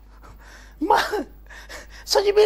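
One short voiced exclamation from a person about a second in, rising and falling in pitch; the rest is low background.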